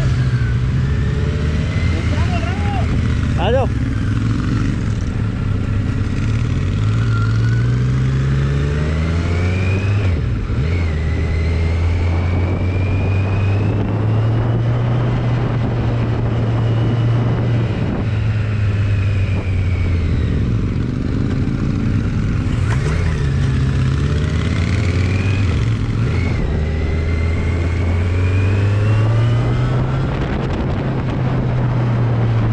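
Kawasaki Z900's inline-four engine running hard on the road, its note rising under throttle and dropping back several times, with wind rushing over the microphone.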